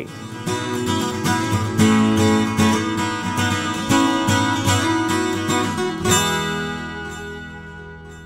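Acoustic guitar played as a quick run of picked and strummed notes, ending about six seconds in on a strummed chord that rings and slowly fades.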